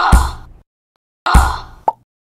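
Two punch sound effects, each a sudden hit that fades out over about half a second, the second coming a little over a second after the first and ending in a short sharp snap, with dead silence between them.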